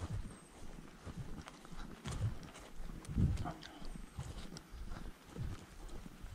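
Footsteps of a person walking on a grassy dirt track, uneven low thumps with small clicks of grass and grit underfoot.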